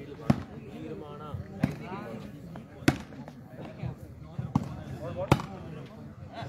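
A volleyball struck by players' hands during a rally: four sharp slaps a second or more apart, with a weaker one among them, over faint voices.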